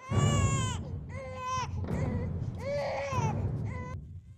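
Newborn baby crying loudly: four high-pitched wails, each rising and then falling, with short breaths between them.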